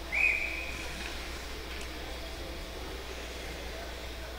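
A whistle blown once: a single steady high note lasting about a second, typical of a hockey referee's whistle during a stoppage before a face-off. It is followed by steady rink background noise with a low hum.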